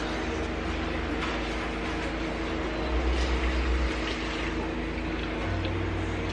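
A steady machine hum of several held tones over an even hiss, with a low rumble that swells for about a second around the middle.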